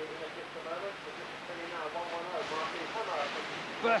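Rushing white water on an artificial slalom course, a steady churning hiss, with a faint voice talking underneath.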